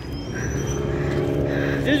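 Motor vehicle on the adjacent road: a steady engine hum that grows louder over about a second and a half as it passes.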